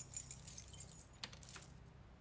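A set of keys jingling, with several small metallic clicks, as they are handled at a door lock. The sounds come in a short cluster and die away near the end.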